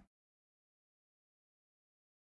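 Near silence: a short sound fades out right at the start, then the sound track is silent.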